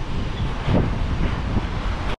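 Strong wind buffeting the microphone on a ship's open deck at sea, a steady low rumble of wind noise.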